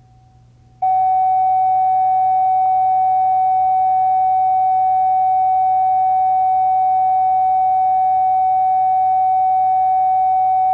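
Videotape reference tone under a program title slate: one loud, steady, unwavering pitch that switches on sharply about a second in and holds without change.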